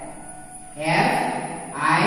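A voice repeating a short word in a rhythmic, sing-song way about once a second, starting just under a second in after a brief lull.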